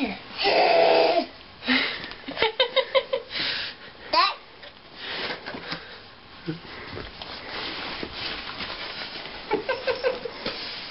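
A baby's loud, high squeal about half a second in, followed a couple of seconds later by short bursts of giggling laughter and a brief rising squeal, then quieter sounds.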